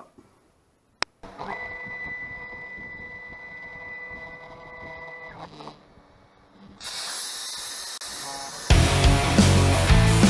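Langmuir Crossfire Pro CNC plasma table running: a click, then a steady whine with several steady tones for about four seconds, then a loud hiss as the torch works the 1/4-inch mild steel plate. Loud heavy rock music comes in near the end and drowns it out.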